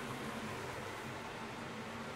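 Steady low hiss of kitchen background noise with no distinct knocks or clinks.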